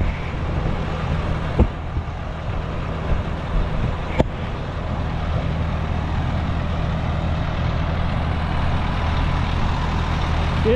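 Bobcat T770 compact track loader's diesel engine running steadily as the machine moves off, with two sharp knocks, about a second and a half and about four seconds in.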